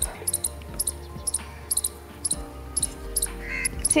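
A baby squirrel calling overhead in short, high paired chirps, about two a second, under the light scraping of a wire whisk beating egg batter in a bowl.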